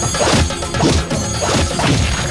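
Film fight sound effects: three heavy punch impacts in quick succession over the background score.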